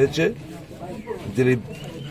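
A man's voice, stopping and starting, with a quieter pause in the middle. A faint cooing bird, like a pigeon or dove, sounds behind it.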